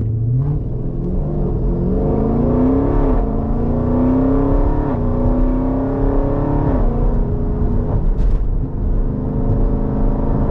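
A 2020 Jeep Grand Cherokee SRT's V8, with Kooks headers and a Borla S-Type exhaust, heard from inside the cabin under hard acceleration. The engine note climbs in pitch through the gears, dropping at three upshifts about three, five and seven seconds in, then runs steadier at speed.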